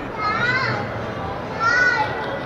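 A child's high-pitched voice calling out twice, with a gliding pitch, over a steady background noise.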